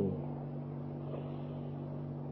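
Steady low hum with a light hiss, unchanging throughout, in a pause of a recorded talk.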